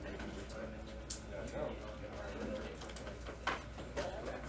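Low, indistinct chatter of voices in a room, with two sharp clicks, one about a second in and one near the end.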